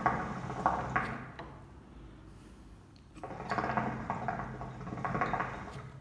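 Water bubbling in a glass hookah base as the smoker takes two long draws on the hose to get a fresh bowl going, the second starting about three seconds in. A faint steady low hum lies underneath.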